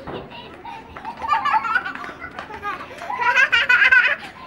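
Young children's high-pitched voices calling out as they play, starting about a second in and loudest near the end.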